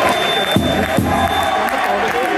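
Basketball crowd in a sports hall cheering and clapping, many voices shouting over one another, with two sharp knocks about half a second apart near the middle.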